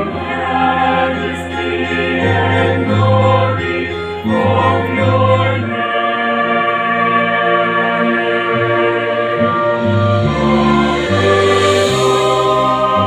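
A mixed choir singing a hymn in several-part harmony, moving through long held chords.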